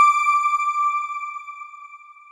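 A single electronic chime, the sting for an animated outro logo, struck once and ringing at one steady pitch as it fades away over about two and a half seconds.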